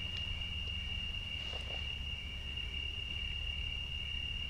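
Crickets trilling steadily in one unbroken high tone, over a low background hum.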